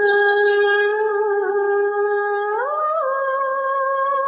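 A woman's voice humming one long held note, sliding up to a higher note about two and a half seconds in and holding it.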